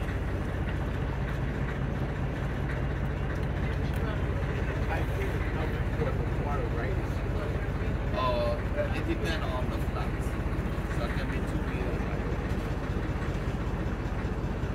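A boat's engine running steadily with a low, even hum, with faint voices briefly about eight seconds in.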